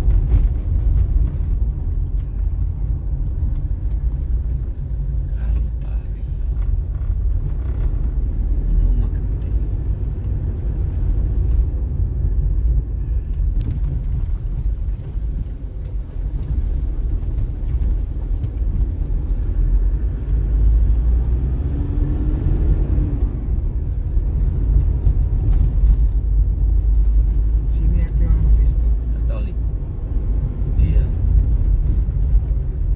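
Steady low rumble of a vehicle travelling along a road, with wind buffeting the microphone.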